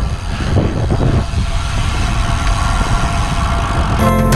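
Wind rushing over the microphone of a bike-mounted camera while riding a road bike, a loud steady rumble without a clear pitch.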